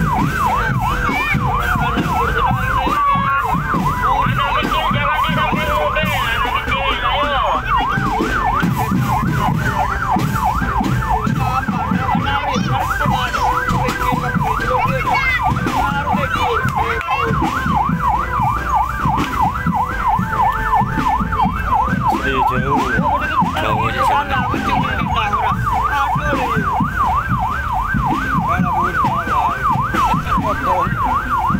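A fast warbling electronic siren, its pitch swinging up and down rapidly a few times a second without a break, over a dense low rumble.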